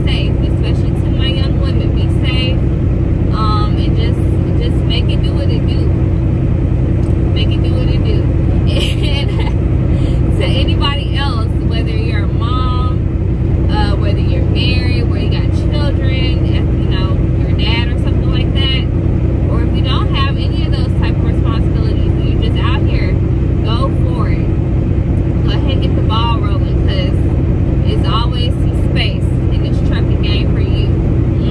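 Steady low drone of a semi-truck's engine heard inside the cab, with a woman's voice over it.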